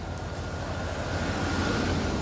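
The van's engine idling with a steady low hum under a steady hiss.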